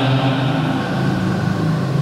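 A man's voice drawing out long held syllables in a chant-like tone, dropping to a lower pitch a little under a second in.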